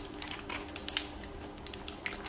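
Aluminium foil wrapper around a bun crinkling and clicking as it is handled: a run of small, irregular, sharp ticks.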